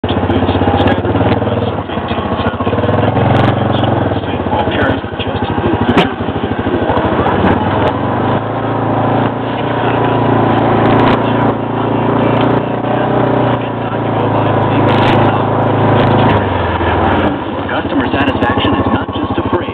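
Yamaha Rhino side-by-side's single-cylinder four-stroke engine running under load on a rough woodland trail, its pitch rising and falling with the throttle and easing near the end, with occasional sharp knocks.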